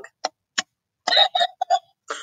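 Orange novelty push button pressed, giving a click and then a recorded dog bark through its small speaker about a second in, one longer bark followed by three quick short ones.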